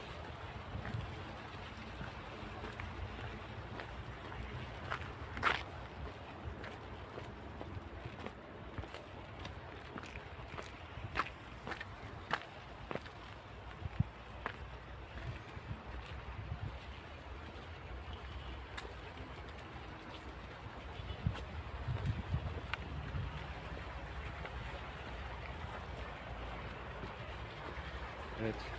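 Wind buffeting a handheld phone's microphone outdoors: a steady, fluctuating low rumble, with a few sharp clicks scattered through the first half.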